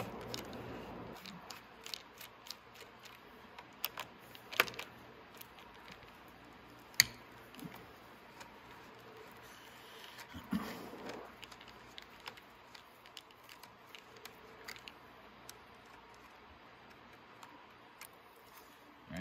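Scattered small metallic clicks and ticks of a screwdriver working the terminal bolts on a motorcycle battery as the cables are freed from the posts. The sharpest click comes about seven seconds in, with a brief rustle a little after ten seconds.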